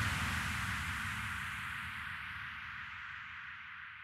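The tail end of an electronic trap remix: a hiss and a low rumble with no beat, fading away steadily.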